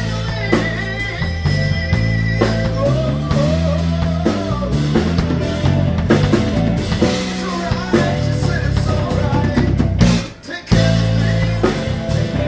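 Live rock trio playing: electric guitar lead with a held high note and bent notes over electric bass and a drum kit. The band cuts out briefly about ten seconds in, then comes back in.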